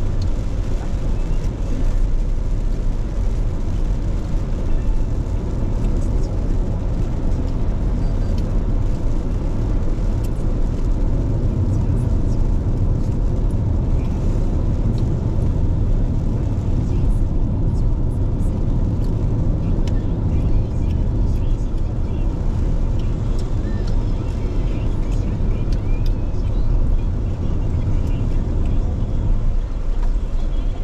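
Steady road noise heard from inside a car cruising on a wet expressway: a deep, even rumble of engine and tyres with a hiss of tyres on the wet road above it.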